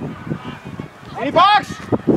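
One loud, high-pitched shout, its pitch rising and then falling, about a second and a half in, over quieter voices.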